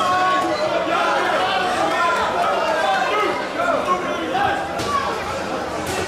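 Crowd of spectators and corner crews talking and calling out at ringside during a kickboxing bout, many voices overlapping at a steady level. A couple of faint sharp knocks, strikes landing, sound about five seconds in.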